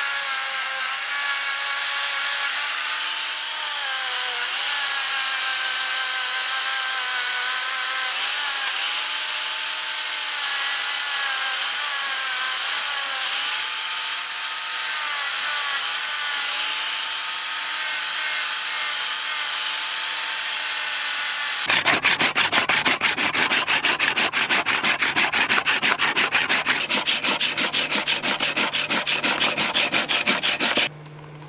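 Angle grinder with a rubber-backed sanding pad running against a steel knife blade. Its motor whine wavers slightly in pitch as the pad is pressed and eased along the blade. About 22 seconds in, this gives way to a handsaw cutting through a block of wood with fast, even back-and-forth strokes.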